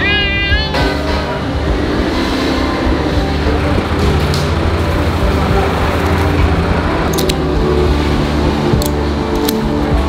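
Background music with a steady bed of sustained notes and a high wavering vocal line near the start.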